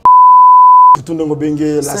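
A broadcast test tone played with colour bars: one loud, steady, high-pitched beep lasting just under a second and cutting off sharply. A man's voice follows.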